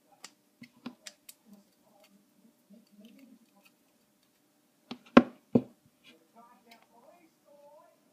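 Scissors snipping through plastic tape, a quick run of sharp clicks in the first second and a half, then a few louder sharp clicks about five seconds in as the tape strip is handled and cut.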